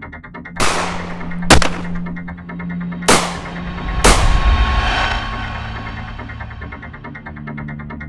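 Dubbed film gunshot sound effects: about five sharp shots over four seconds, two of them in quick succession, each with a fading echo, the last followed by a low rumble. They play over electronic background music, which drops out during the shots and returns near the end.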